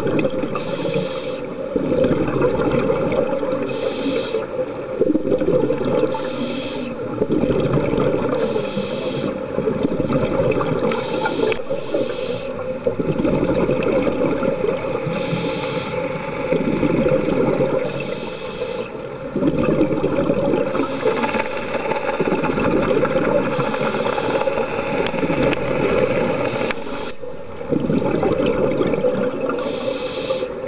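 Scuba diver breathing through a regulator underwater: a short hiss on each inhale, then a long gush of exhaust bubbles on each exhale, repeating about every three seconds.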